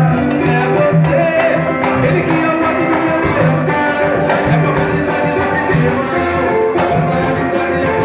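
Live samba: a man sings into a microphone over strummed acoustic guitar and cavaquinho, amplified through the room's PA.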